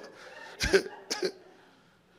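Two short coughs about half a second apart.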